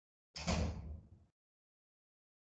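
A single sudden thump, about a second long, fading and then cut off abruptly, coming through a video-call microphone.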